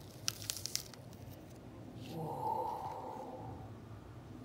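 A quick run of crackling, tearing clicks as a large Russell avocado's two halves are twisted apart and the flesh pulls away from the pit. About two seconds in, a steady hummed tone lasts for a second and a half.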